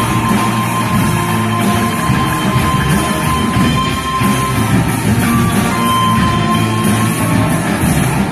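Live rock band playing an instrumental passage, with electric guitars to the fore over bass and drums and one high note held across most of it.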